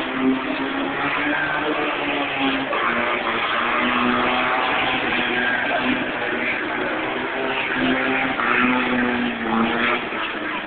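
Racing car engines running hard around a track, their note rising and falling as the revs change.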